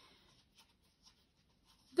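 Faint, brief rustle of hands handling a suede pump, followed by a few faint light ticks; otherwise near silence.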